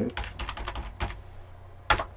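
Typing on a computer keyboard: a quick run of keystrokes in the first second or so, then one louder keystroke near the end.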